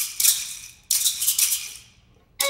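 Rattles shaken in single sharp strokes in a sparse instrumental piece. There are three strokes, each a dry hiss that dies away, and the last fades out near the end.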